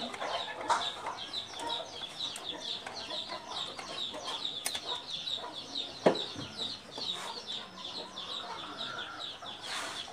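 Birds chirping rapidly and without a break. A sharp knock about six seconds in is the loudest sound, from hand work on the exposed engine.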